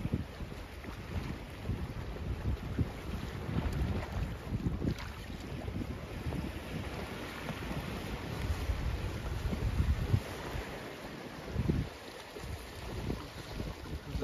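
Wind buffeting the microphone, an uneven gusting rumble, with small waves washing against the rocky shore underneath.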